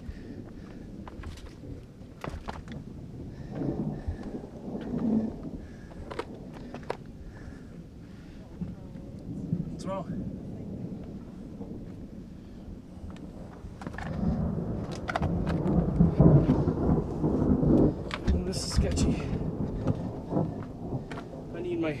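Thunder rumbling low and long, twice: a swell a few seconds in and a louder, longer one about fourteen seconds in. Light knocks and scuffs from boots scrambling over rock run throughout.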